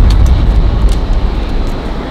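Loud, low, steady rumble of city street traffic noise, with a few faint ticks above it.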